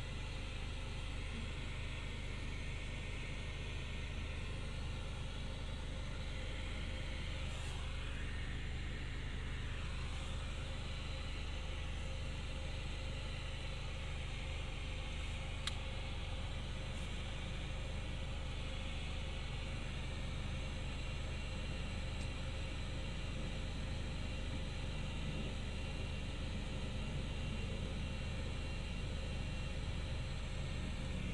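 Steady road and engine rumble inside a moving car's cabin, with a faint steady hum.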